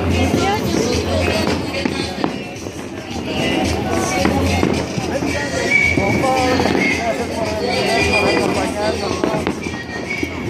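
Voices and music over a firework throwing down a shower of sparks, with scattered sharp crackles.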